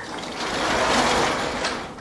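Vertical sliding chalkboard panel being moved along its track: a steady sliding, rolling noise lasting about two seconds that swells in the middle and fades near the end.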